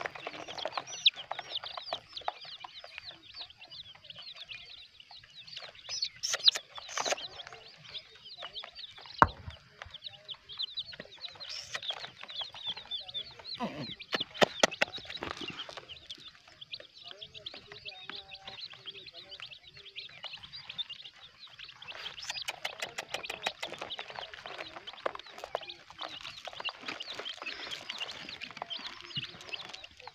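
A cage full of young chicks peeping, many short high chirps overlapping throughout. A few sharp knocks break in, with a quick run of clicks around the middle and another about two-thirds of the way in.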